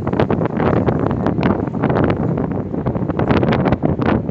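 Wind buffeting the microphone on a moving river boat: a loud, continuous rumbling noise with rapid, irregular crackles.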